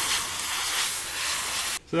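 Airbrush spraying paint: a steady hiss of air that cuts off suddenly near the end.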